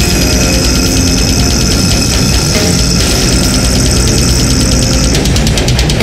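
Brutal death metal: dense, distorted guitars and bass over rapid, evenly spaced drum hits with a steady cymbal ring, played loud.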